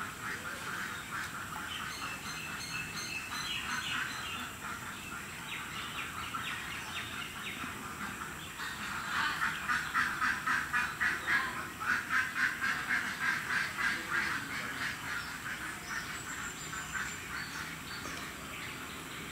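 Ducks quacking in quick, repeated runs, busiest and loudest in the middle at about four or five calls a second.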